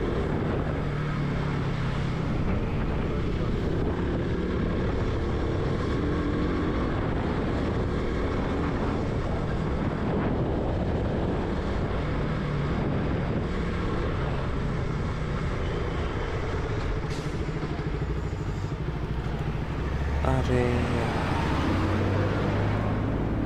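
KTM RC 200's single-cylinder four-stroke engine running steadily as the motorcycle rolls slowly through town traffic.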